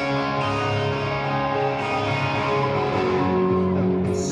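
A live rock band plays an instrumental passage led by strummed electric guitar, with no singing, recorded from within the concert crowd.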